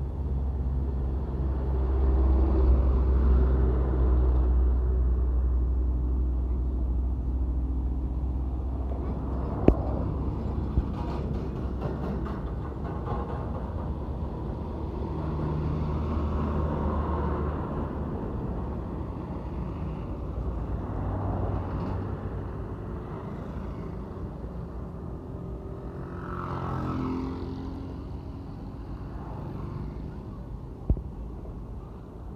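Heavy diesel trucks passing close by on a highway, a deep engine drone that swells a few seconds in and fades, followed by more passing truck and traffic noise. Two sharp clicks about ten seconds in.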